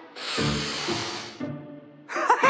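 A hissing cartoon sound effect lasting about a second, over light background music.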